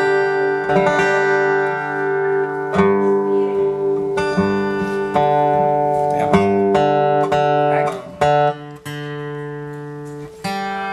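Acoustic guitar strummed in slow chords that are left to ring, checking the tuning before the song. Near the end the strums turn quieter and sparser as a tuning peg is adjusted.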